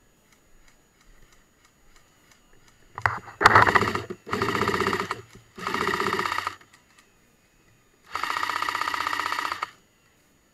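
Airsoft electric LSW-style rifle firing four full-auto bursts, each a fast, even rattle about a second long, starting about three seconds in; the last burst, near the end, is the longest.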